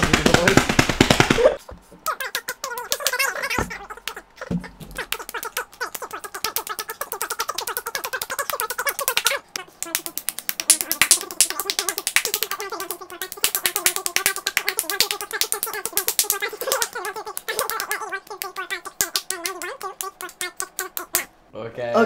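Hands slapping together in rapid repeated high fives, several sharp smacks a second. The run is densest and loudest in the first second or two.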